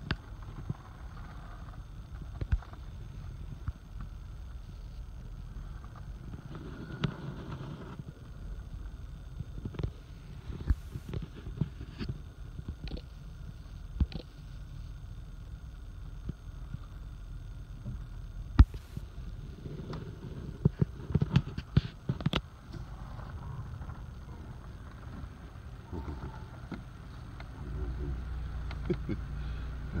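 Steady low rumble of an idling vehicle, with scattered sharp clicks and knocks, the loudest a little past halfway and a run of them soon after.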